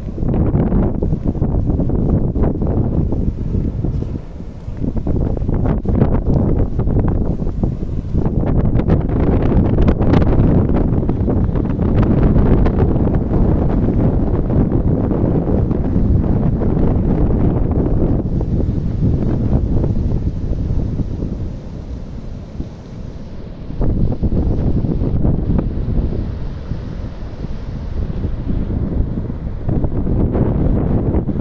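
Strong wind buffeting the microphone in gusts, with the rush of rough surf breaking on the beach beneath it. The wind eases briefly about four seconds in and again for a couple of seconds after the twenty-second mark.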